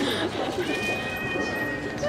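A cat's long, drawn-out meow that starts about half a second in and holds one steady pitch for over a second.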